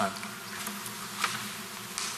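A steady low electrical hum and faint hiss of room tone, with a short faint click about a second in.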